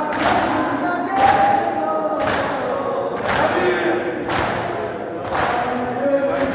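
A crowd of men chanting a mourning lament (noha) in unison, with hands beating on chests together in matam about once a second, six strikes in all.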